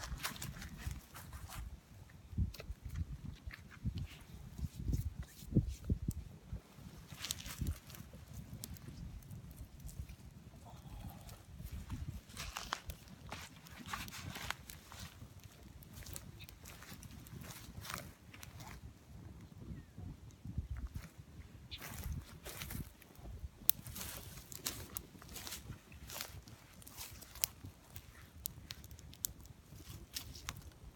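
Twig bundle fire burning freshly fed with thicker sticks: irregular crackles and pops throughout, over a low steady rumble.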